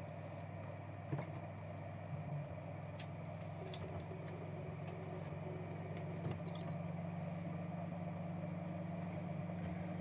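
Steady low room hum with a few faint clicks and light rustles of trading cards being slid into plastic penny sleeves and handled.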